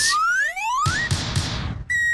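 Cartoon-style comedy sound effect laid over the video: two rising whistle glides, then about a second of hiss with soft low beats, then a falling whistle starting near the end.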